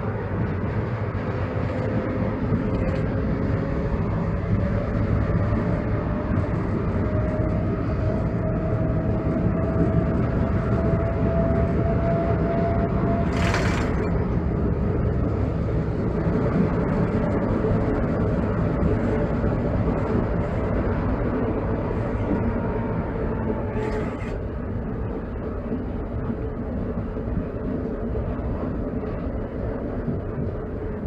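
Konstal 803N tram running along its track, heard from the driver's cab: steady running noise of the wheels on the rails and the motors, with a thin whine climbing slowly in pitch through the first half. A single sharp crack comes about halfway through, and a fainter one later.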